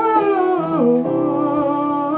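Pop song playing: a melody line slides down in pitch about a second in, over held accompanying notes.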